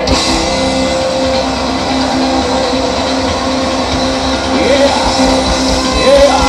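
Live rock band of keyboard, electric guitar and drum kit playing a sustained chord with no singing, the notes held steady over a continuous high wash.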